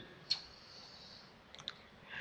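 A short pause with faint hiss and small clicks: one click about a third of a second in, then two or three fainter ones near the end.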